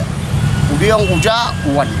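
Steady low rumble of road traffic under a man's speech, which starts a little under a second in.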